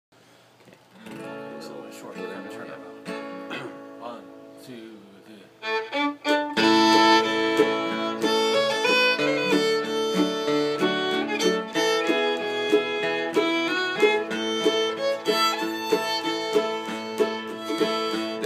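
Acoustic guitar and fiddle playing the instrumental introduction to a bluegrass song. Soft, scattered playing at first, then the full ensemble comes in about six and a half seconds in and keeps a steady rhythm.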